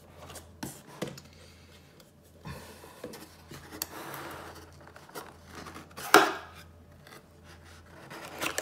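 Cardboard box being handled and opened by hand: scattered light taps and scrapes, a rubbing, sliding sound around the middle, and a loud sharp snap about six seconds in as the lid comes free.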